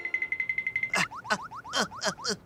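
Cartoon sound effects: a fast-pulsing high beep held for about a second, then a quick run of short sweeping blips, about six in a second.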